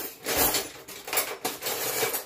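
A scooper clinking and scraping against a pot as mashed potatoes are scooped out: several short clattering strokes.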